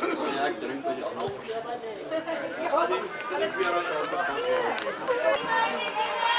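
Spectators at the touchline chattering and calling out, many voices overlapping, growing louder right at the start.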